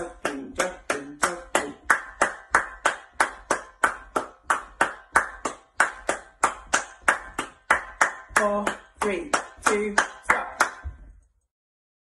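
Steady hand claps, about three a second, keeping an even quaver ('jogging') rhythm; they stop suddenly about eleven seconds in.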